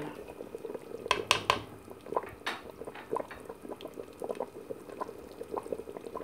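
Tomato sauce stew boiling in an open cooking pot, bubbles popping irregularly with a few louder pops between about one and two and a half seconds in.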